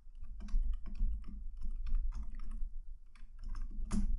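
Typing on a computer keyboard: an uneven run of quick key clicks with short pauses, over a low steady hum.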